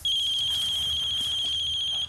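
A mobile phone ringing: one steady high electronic tone lasting about two seconds, starting and stopping sharply.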